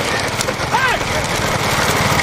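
Bullock-cart race on a road: a steady rumble of engines, hooves and cart wheels, with a man's short shout a little under a second in.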